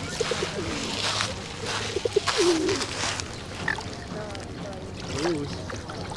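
A few short, low calls that rise and fall, from the mute swans and pigeons gathered at the water's edge, over small waves lapping at the shore.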